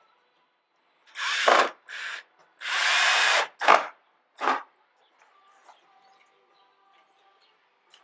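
Cordless drill driving a screw through a 2x4 frame into plywood, run in five short bursts of the trigger, the longest about a second, until the screw sits flush.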